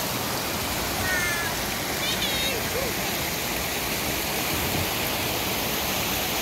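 Mountain stream rushing over rocks, a steady noise of flowing water. A few short high chirps come about one and two seconds in.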